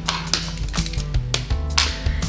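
Background music with a steady bass line and a few sharp percussive hits, between breaks in a woman's talking.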